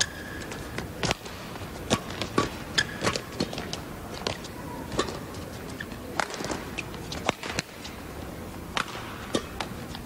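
Badminton rally: sharp racket strikes on the shuttlecock at irregular intervals, about one a second, mixed with players' shoes squeaking and stamping on the court, over a low hall background.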